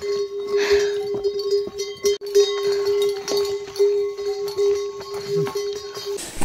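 Bells on a train of pack mules ringing as the animals walk: one sustained, slightly pulsing bell tone with scattered clanks and knocks.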